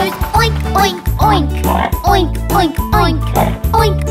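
A children's sing-along song: a bouncy backing track with singing about a pig, with pig oinks.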